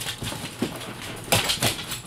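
Small dogs getting down off a bed: a few quick thumps and scrabbles of paws on bedding and pet steps, the two loudest close together about a second and a half in.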